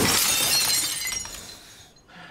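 Glass shattering: a sudden loud crash, then tinkling shards that fade away over about a second and a half.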